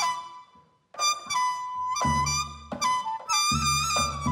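Daegeum, the large Korean bamboo transverse flute, playing a solo melody: a held note fades into a brief silence, then a new phrase starts sharply about a second in with held notes and small slides between pitches. Low sustained notes from the ensemble come in underneath near the end.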